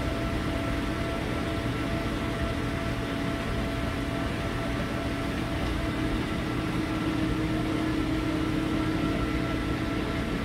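Steady hum and hiss of aquarium filtration and air equipment, with several faint steady tones and no change throughout.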